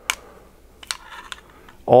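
Handling noise from a small pistol in a fabric hook-and-loop holster: a sharp click at the start, then a few light clicks and a soft rustle about a second in.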